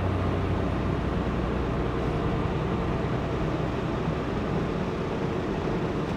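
Kenworth semi truck cruising on the highway, heard from inside the cab: a steady low engine drone under even road noise.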